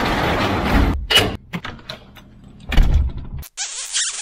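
Metal sectional garage door rolling down its tracks with a steady rumble that stops about a second in, followed by a few knocks and a loud thud near three seconds as it closes.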